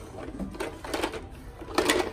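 Plastic toy tractor and trailer clattering and clicking as a toddler handles them, with the loudest knock near the end.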